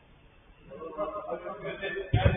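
Men's voices on the pitch, with no words that can be made out. They start after a quiet first half-second and carry on to the end.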